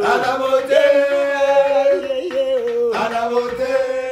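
A group of men singing a chanted refrain together in long held notes, with a new phrase starting about three seconds in.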